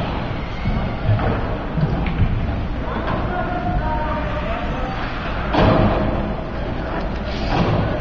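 Ice rink noise during hockey play: an echoing hall murmur with a few dull thuds and knocks from the puck, sticks and players against the boards, and faint distant voices calling out.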